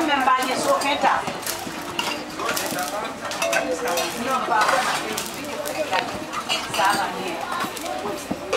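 Metal spoons, plates and cups clinking and a serving spoon scraping in a metal pot as rice and beans are dished out, over the chatter of many children.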